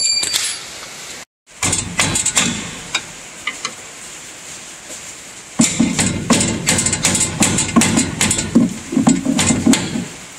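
A steel screwdriver prying and knocking against the sheet-metal pan of a combine's soybean header while working the pan loose. After a quieter stretch of scattered clicks, there is a rapid run of metallic knocks, several a second, from about halfway through.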